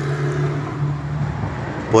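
A steady low engine hum, like a vehicle idling, that fades slightly about three-quarters of the way through.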